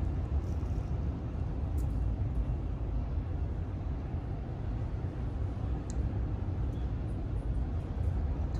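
Steady low rumble of city traffic, an even background hum with no single vehicle standing out, and a couple of faint ticks.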